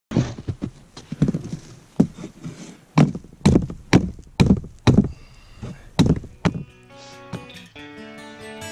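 A hatchet striking the top of a sharpened wooden stake to drive it, about a dozen knocks, quickest in the middle at roughly two a second. Acoustic guitar music comes in near the end.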